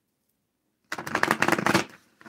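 A deck of tarot cards being shuffled on a table: about a second in, a dense run of quick card flicks lasting about a second.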